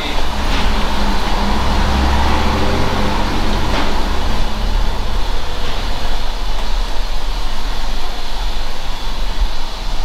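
Loud rumbling of a heavy road vehicle passing close by, strongest about two to three seconds in and then easing to a steady traffic noise.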